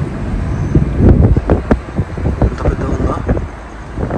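Road and engine noise of a moving car, with wind buffeting the microphone in uneven low gusts, heaviest in the middle.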